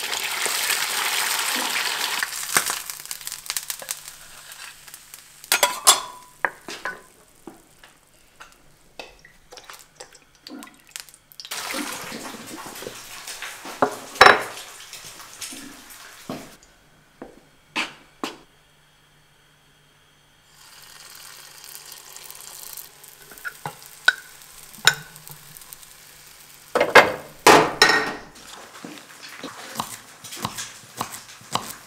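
Eggs frying in a cast-iron pan, sizzling loudly as they are cracked in at the start, followed by scattered clinks and knocks of kitchen utensils and a run of knife chops on a wooden cutting board near the end.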